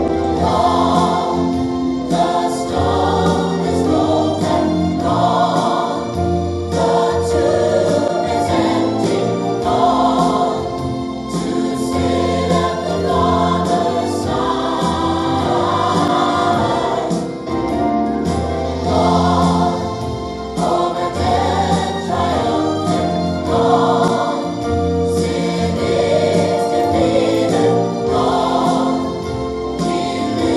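A choir singing a gospel-style Christian song, with sustained chords throughout.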